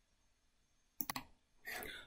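Two or three quick computer mouse clicks about a second in, after a second of near silence.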